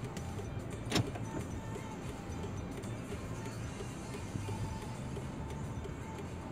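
Steady low hum inside a car's cabin, with one sharp click about a second in and faint radio music under it.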